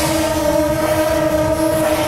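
Long brass processional horns (shaojiao) blowing one long, steady note together, a continuous horn-like drone.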